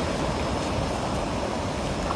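Steady rushing of water pouring over a reservoir spillway about 26 cm deep, the reservoir overflowing.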